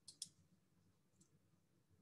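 Near silence: room tone, with two faint, short clicks just after the start and a fainter one about a second in.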